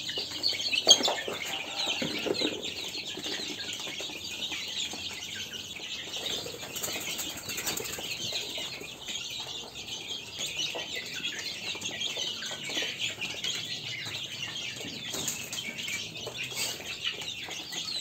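Free-range chickens feeding: a busy, steady run of small pecks and scuffles with chicken calls throughout.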